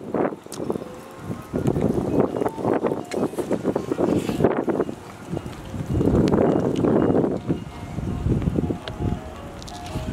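Wind buffeting the microphone in two gusts, with a faint, simple tune of plinking single notes coming in near the end.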